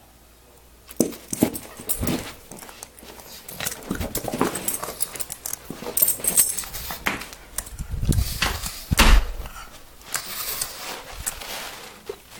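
Pug puppy making dog noises as it scuffles with a plastic wiffle ball, with irregular knocks and rustles, and a heavy low thump about eight to nine seconds in.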